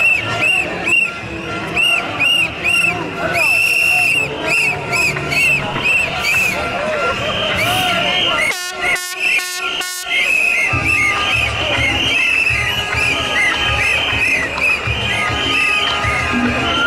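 A marching protest crowd with many short, shrill whistle blasts, several a second, over crowd chatter. A little past the middle a horn sounds in about four short blasts.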